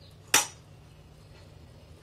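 A single sharp clink of a metal spoon against a stainless steel bowl, with a brief ring.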